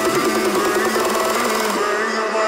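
Electronic background music with steady held tones over a fast, buzzing repeated pattern.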